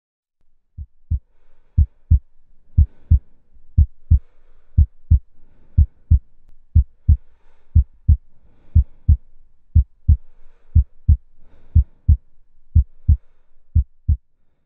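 Heartbeat, a steady lub-dub double thump about once a second.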